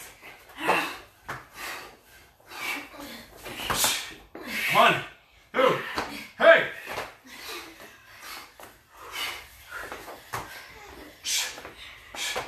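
Several people breathing hard during push-ups and squats: short, sharp exhalations and grunts at an irregular rate, about one a second, with a few indistinct voiced sounds.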